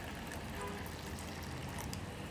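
Hot water poured from a steel bowl into a steel tea-strainer pot, a faint steady trickle over a low hum.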